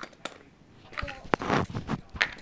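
Clicks and crackling of a small plastic toy capsule from a chocolate surprise egg being handled and pried apart by hand, with a sharp click a little past the middle.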